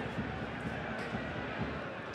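Steady football stadium crowd noise, an even hubbub with no single sound standing out.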